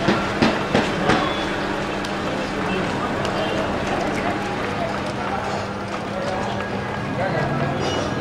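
Outdoor street ambience: indistinct distant voices over a steady background hum, with a few sharp clicks in the first second.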